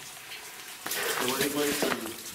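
A man's voice saying a few indistinct words starting about a second in, after a second of faint noise.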